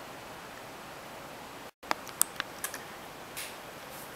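Steady faint room hiss, broken by a short dropout in the sound a little under two seconds in, followed by a handful of sharp, irregular clicks of computer keyboard keys.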